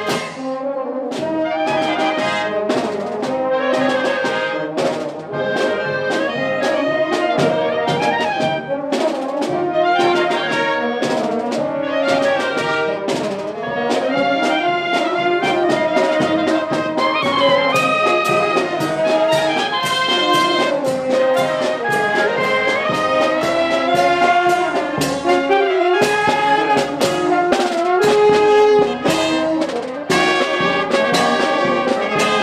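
Italian town wind band of clarinets, saxophones and brass playing a tune, with regular drum strokes under it.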